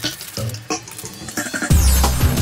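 Plastic bag crinkling as hands unwrap parts, with many quick crackles. Near the end, electronic drum-and-bass music with heavy bass comes in suddenly and is louder than the crinkling.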